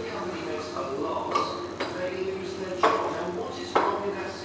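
Demolition excavator at work: a steady machine hum with four sharp clanks and knocks, the loudest two near the end.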